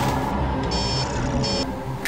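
Computer control-room beeps: two short spells of high electronic beeping, about a second in and again near the end, over low music.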